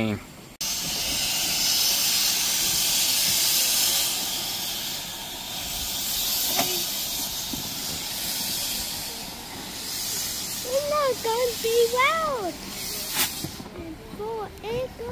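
A 15-inch-gauge steam locomotive letting off steam: a loud, continuous hiss that starts suddenly about half a second in and slowly dies away over the next ten seconds. A child talks near the end.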